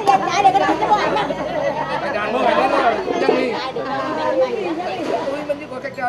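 Several people chatting over one another in Vietnamese, with laughter at the start.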